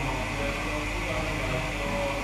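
Steady hum and hiss of workshop ventilation running.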